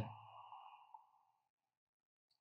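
Faint receiver hiss with a thin steady tone from a ham radio transceiver's speaker, fading out within the first second, then near silence.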